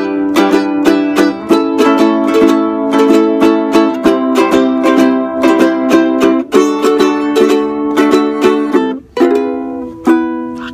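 Two ukuleles strummed together in a fast, steady rhythm through a run of chord changes, with no singing. There is a brief break a little after nine seconds in, then a final chord is struck and left ringing.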